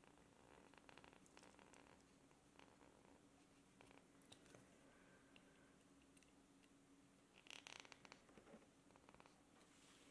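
Faint scratching and crackling of a straight carving knife slicing into a wooden spoon handle to cut a V-groove line, with a louder run of crackles about seven and a half seconds in.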